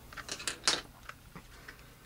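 A few light clicks and taps of a Kydex holster and its plastic belt clip being handled, mostly in the first second, the loudest about two-thirds of a second in, over a faint steady hum.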